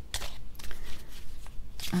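Shadowscapes tarot cards being shuffled by hand, a run of irregular soft strokes, before the next card is drawn. A woman's voice starts at the very end.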